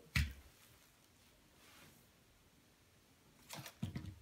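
A dull knock just at the start, then a quiet room, then two or three light knocks near the end, as things are handled on a work table.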